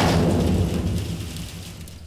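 A cinematic boom sound effect: a sudden crash that rolls off in a low rumble, like thunder or an explosion, fading over about two seconds before it cuts off abruptly.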